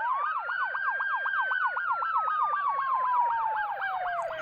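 Ambulance sirens from a sound-effect recording: a fast yelp warbling about seven times a second, under a second siren's wail that rises at the start and then slowly falls in pitch.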